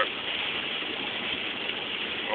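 Steady rush of heavy rain and wet road noise heard from inside a moving car's cabin.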